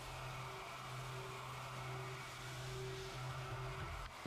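Horizontal machining center cutting aluminum dry, with only an air blast instead of coolant: a faint steady hum under a continuous hiss.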